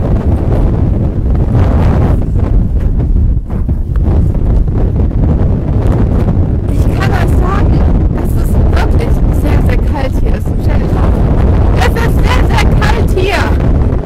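Strong wind buffeting the camera's microphone: a loud, continuous low rumble that keeps up throughout.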